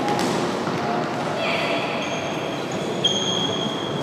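Crowd and game noise in a large indoor sports hall during a futsal match: a murmur of voices under the play. From about a second and a half in, high, drawn-out squeaking tones sound, the strongest starting about three seconds in.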